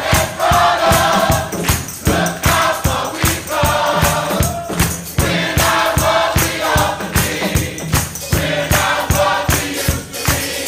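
Gospel choir singing full-voiced phrases over a steady, fast percussion beat.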